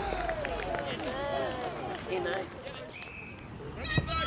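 Indistinct shouts and calls from several voices across an open rugby field, overlapping, with no clear words.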